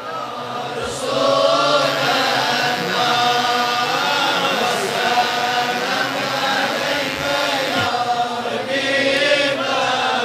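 A group of men chanting a devotional refrain together, many voices overlapping in one steady, sustained chant.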